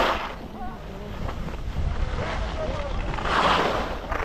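Skis sliding and scraping on packed snow, with two louder swishes of turns, one at the start and one about three and a half seconds in, over a low rumble of wind on the camera's microphone. Chatter of people on the slope is heard faintly.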